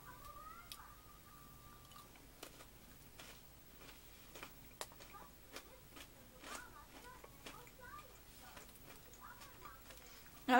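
Faint chewing of a crunchy chocolate-coated pretzel snap: scattered soft crunches and mouth clicks, about one every half second to second. A thin steady tone is heard for the first two seconds.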